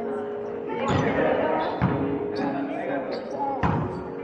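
A volleyball being struck and bouncing about five times during a rally, sharp hits ringing in a large gym hall, the loudest about a second in and near the end, with players' voices underneath.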